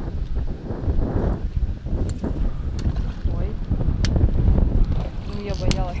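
Wind buffeting the microphone, an uneven low rumble, with a few faint sharp clicks.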